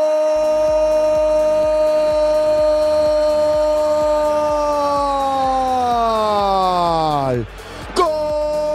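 A football commentator's goal cry: one long shouted note held steady, then sliding steeply down in pitch and breaking off about seven and a half seconds in. Music with a steady beat runs underneath from just after the start.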